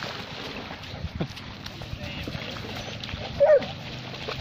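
A dog gives one short, loud bark near the end, over a steady background wash of lake water at the shore.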